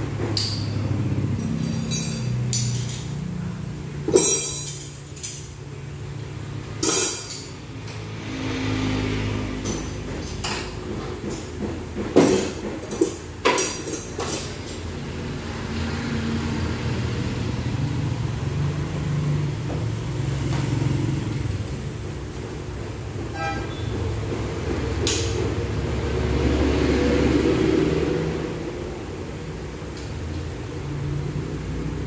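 Hand wrench clinking and knocking against metal on a scooter's engine underside, a handful of sharp clinks in the first half, over a steady low workshop hum.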